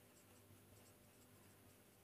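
Near silence: a marker writing faintly on a whiteboard.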